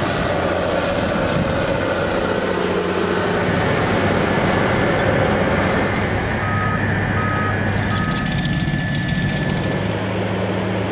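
Heavy canal-lining construction machinery running steadily, a low engine drone under a broad mechanical noise, with three short beeps of a backup alarm, under a second apart, about two-thirds of the way in.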